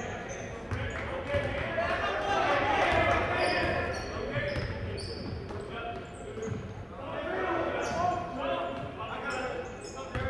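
Basketball game sound in an echoing gym: a ball dribbling on the hardwood floor and sneakers squeaking in brief high chirps as players run, with crowd voices in the background.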